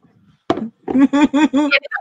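A single sharp knock about half a second in, then a woman laughing in four or five short, evenly spaced bursts.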